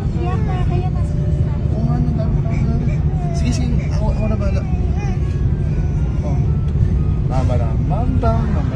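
Steady low drone of an airliner cabin in flight, with high-pitched voices chattering and cooing over it.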